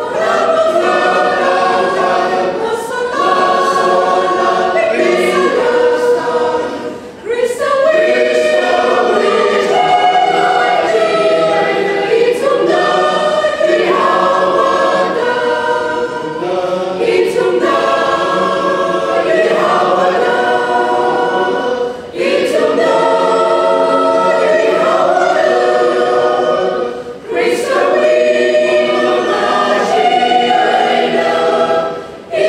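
Mixed choir of women and men singing a church song in parts, held notes moving from chord to chord, with short breaks between phrases about a quarter of the way in and twice near the end.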